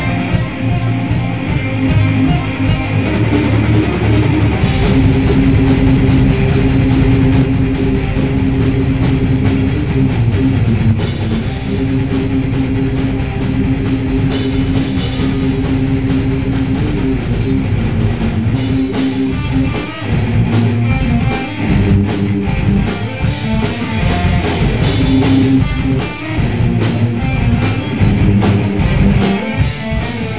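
A rock band playing live, loud and continuous: electric guitar and bass holding low notes over a drum kit with steady drum and cymbal hits.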